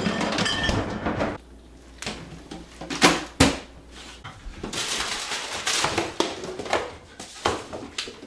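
Household items clattering and knocking as someone rummages through a refrigerator and a lower kitchen cabinet, with two sharp knocks about three seconds in and a longer stretch of rustling and scraping after that.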